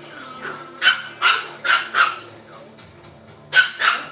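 A dog barking: four short barks about a second in, then two more just before the end.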